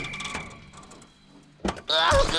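Cartoon crash sound effects of an overturned pickup truck dying away, with faint rattles, then a single sharp knock. A man's voice begins groaning near the end.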